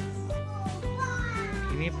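Background music with a steady beat and sliding melodic notes, with a voice saying one word near the end.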